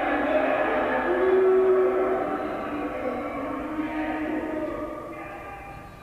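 A sustained chord of several held tones, loudest about a second and a half in, then fading away over the last few seconds.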